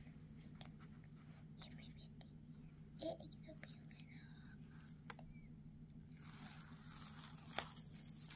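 Faint rustling and small scattered clicks of hands peeling tape off the corners of a yarn-art sticky mat and handling it, over a steady low hum.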